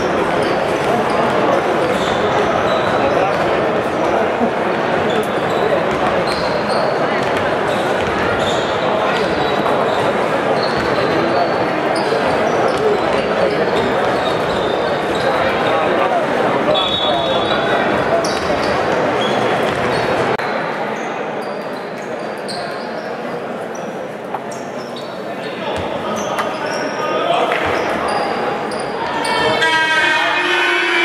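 Basketballs bouncing on a hardwood court amid a babble of voices, echoing in a large sports hall.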